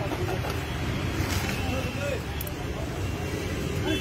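Busy street ambience: a steady wash of traffic noise with the babble of a crowd's voices in the background.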